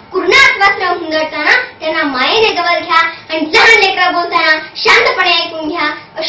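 Only speech: a young girl talking steadily.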